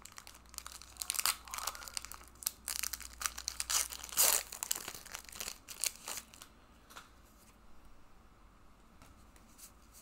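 Foil wrapper of a Pokémon TCG Burning Shadows booster pack being torn open, crinkling and crackling for about six seconds, loudest around four seconds in; after that only a few faint clicks of handling.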